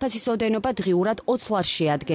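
Speech only: one voice talking continuously.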